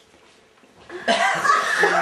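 A brief quiet, then loud laughter breaks out about a second in.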